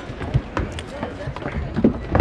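Knocks and thuds of a large sound mixing console being lifted and shifted by a crew, a few sharp knocks about half a second in and near the end, with voices talking.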